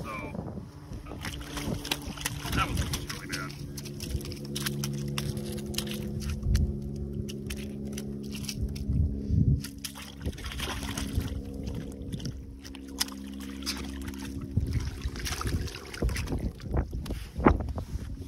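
A pike splashing and sloshing in an ice-fishing hole while its line is handled, with short knocks over a steady low motor-like hum that stops near the end.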